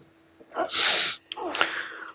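A person's loud, breathy burst of air lasting about half a second, followed by softer breath noise.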